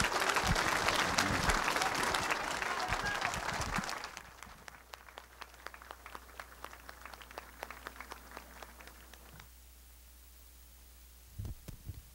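Audience applauding: dense and loud for about four seconds, then thinning to scattered claps that die away at about nine and a half seconds.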